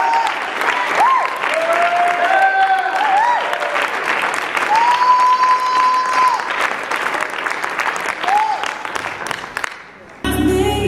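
Audience applauding a curtain call, with cheers and whoops rising and falling over the clapping; the applause thins out near the end.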